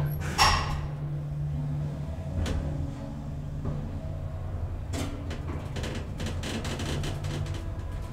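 Hydraulic lift travelling upward, heard from inside the car: the pump motor runs with a steady low hum. A brief loud noise comes about half a second in, and a few sharp clicks follow later.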